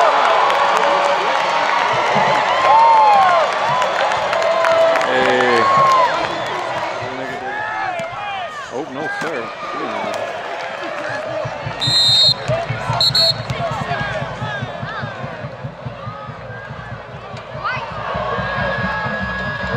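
Stadium crowd at a football game, many voices shouting and cheering, loudest in the first few seconds and easing after that. Two short, high-pitched whistle blasts come about two-thirds of the way through.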